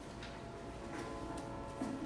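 Quiet meeting-room background with a few scattered light clicks and taps.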